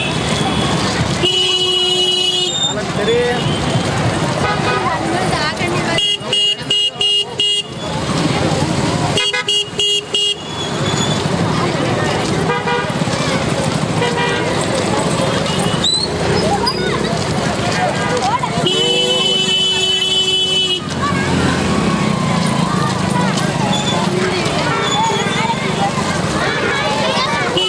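Vehicle horn honking: a short honk about a second in, two runs of rapid short toots a few seconds later, and one longer honk past the middle. Steady crowd chatter runs underneath.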